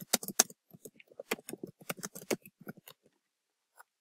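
Computer keyboard typing: a quick run of key clicks for about three seconds, then one more click near the end.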